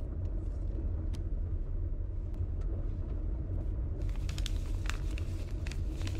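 Steady low rumble of a car driving. Scattered light clicks join in about four seconds in.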